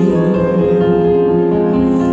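Live music: an electronic keyboard plays slow, sustained chords in a ballad.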